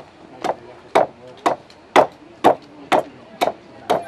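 Shipwright's adze chopping into a timber plank in a steady rhythm, about two sharp blows a second, each stroke shaving a thin sliver from the surface as the plank is dubbed.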